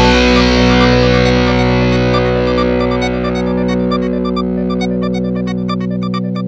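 Edited-in background music: a held chord that slowly fades, with light plucked notes coming in over it about halfway through.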